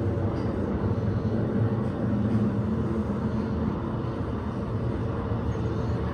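Montgomery elevator running with the cab in travel: a steady low hum and rumble.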